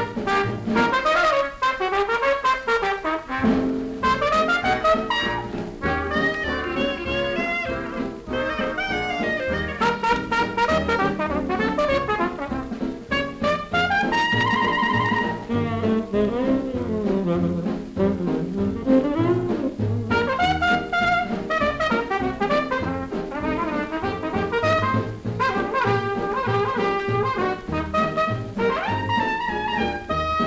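Solo trumpet with dance-orchestra accompaniment playing a jazz tune, played back from a Decca 78 rpm record. About halfway through, one long note is held.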